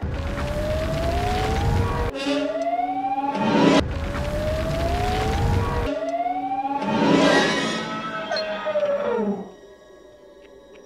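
Film sound effect of a krayt dragon call: a rising, howling wail heard three times in quick succession over a heavy low rumble, then a fourth that rises and falls away, dying out near the end.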